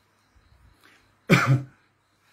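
A man coughs once, sharply, into his fist about a second and a half in, after a near-quiet pause.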